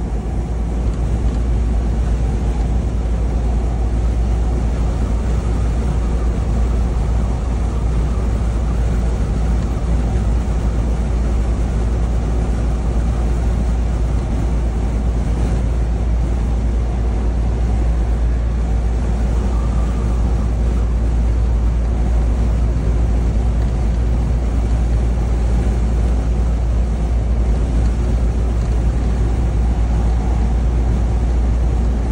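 Steady low rumble of engine and road noise inside the cab of a truck cruising on a highway.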